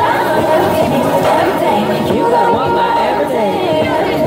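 Overlapping voices of a crowd chattering over dance music played through a small portable amplifier.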